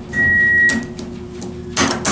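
Elevator's electronic chime sounding one steady high beep for just under a second, over a low steady hum from the car, with sharp clicks from the circle call buttons being pressed on the car panel, the last one near the end.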